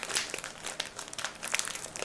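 Packaging crinkling as it is handled: a steady run of small, irregular crackles.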